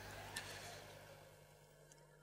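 Near silence: faint room tone with a low steady hum, fading out toward the end, and one faint tick about a third of a second in.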